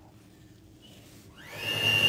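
Electric hand mixer switched on about a second and a half in, its motor whining up in pitch and settling into a steady high whine as its beaters mix double cream.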